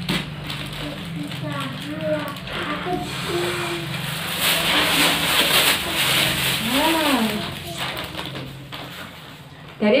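Breath blown into a thin plastic glove and plastic bags to inflate them, with rushing air and crinkling plastic, loudest about four to six seconds in. Faint children's voices come and go underneath.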